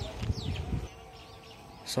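A few short, falling bird chirps over a low rumble that dies away about a second in.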